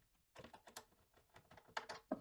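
Faint, irregular small clicks and taps of hands working on a cabinet door's metal hinge, a few at a time.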